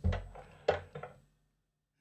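Handling knocks of a trail camera being picked up, heard through its own microphone: a thud at the start, a sharp knock just under a second in and a few lighter clicks, then the sound cuts off dead.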